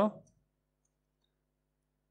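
The end of a man's spoken word, then near silence with a few very faint clicks of typing on a laptop keyboard.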